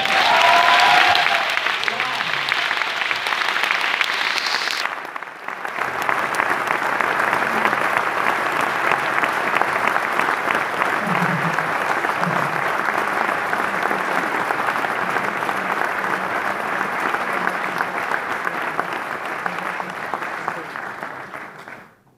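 Theatre audience applauding at the end of a song, loudest in the first couple of seconds with a brief cheer from someone about half a second in. The clapping dips briefly about five seconds in, then runs on evenly and cuts off suddenly at the end.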